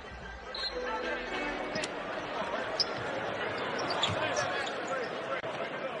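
Arena crowd noise during live basketball play, with a ball bouncing on the hardwood court and a sharp knock about three seconds in.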